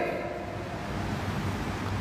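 Steady background hiss with a faint low hum, the noise floor of the sermon recording, with no distinct sound in it.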